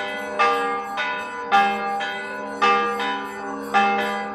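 Church bell ringing with even strokes about a second apart, four in all, each stroke's ring carrying on under the next.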